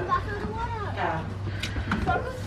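Children's voices calling out at a distance over a low steady hum, with a few sharp clicks near the end.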